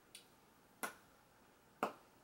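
Two short, sharp clicks about a second apart, with a fainter tick just before them.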